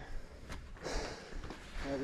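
A mountain biker's short breath through the nose about a second in, over a low rumble.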